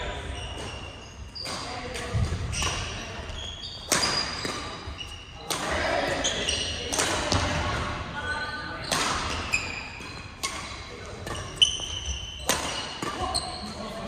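Badminton rackets striking shuttlecocks in rallies on several courts: sharp hits about every second, each ringing in the echo of a large gym. Between the hits come short high squeaks of court shoes on the wooden floor, and players' voices.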